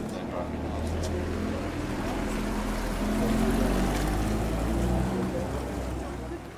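A nearby engine's low, steady hum swells over a few seconds and fades near the end, with people talking faintly underneath.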